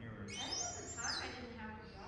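A person's voice making a short wordless vocal sound whose pitch bends, quieter than the talk around it.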